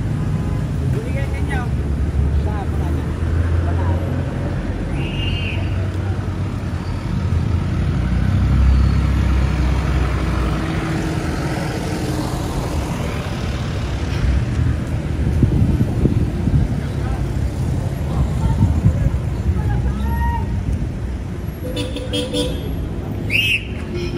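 Street traffic: motor vehicle engines running and passing as a constant low rumble, with people's voices in the background.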